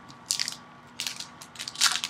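Plastic trading-card pack wrapper crinkling and crackling in several short bursts as it is picked up and opened.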